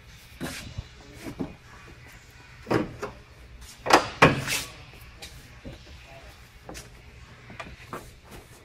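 Knocks and clunks from the door and body of a small camper trailer as a person steps up into it and moves around inside. There are a few light knocks in the first seconds, then two loud thumps close together about four seconds in.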